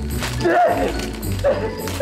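Music playing under the crinkling and tearing of wrapping paper as a man wrapped in it pushes his hands out through it, with short wordless vocal sounds.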